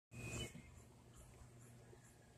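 Near silence: a faint steady low hum, with a brief louder sound in the first half second.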